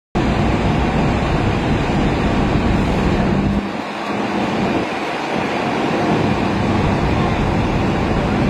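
Steady vehicle noise heard from inside a slowly moving car, a dense rumble with its deepest part dropping away for about two seconds in the middle.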